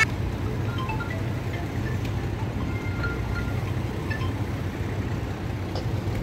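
Boat engine running with a steady low drone, under a haze of open-air noise.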